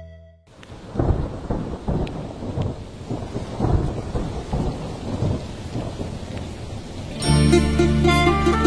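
Thunderstorm sound effect: rolling thunder rumbling in uneven swells over steady rain, rising out of a short silence. Plucked-string music comes in near the end as the song's intro begins.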